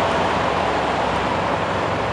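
Steady low rumble and hiss of idling diesel semi-truck engines in a truck yard, unchanging throughout.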